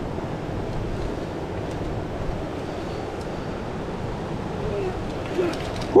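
Steady rush of a fast-flowing river running over rocks, running high after recent rain.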